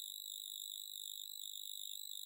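Faint, steady background hiss with a thin high-pitched electronic whine from the recording chain. The whine holds one unchanging pitch, and no other sound is heard.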